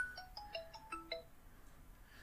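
A faint phone ringtone: a quick electronic tune of short single-pitch beeps stepping up and down, which stops about a second in.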